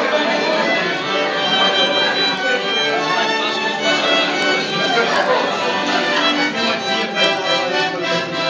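A violin played live close by, a continuous melody, with diners talking underneath.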